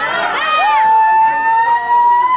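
A spectator in the crowd giving one long, high-pitched yell, sliding up into a held note that lasts well over a second, after shorter shouts just before.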